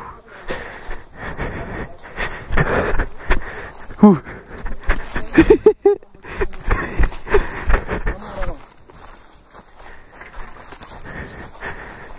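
Footsteps of several people walking down a dirt forest trail strewn with dry leaves and twigs, in an irregular run of steps and rustles. Short vocal sounds come about halfway through, and the steps grow quieter near the end.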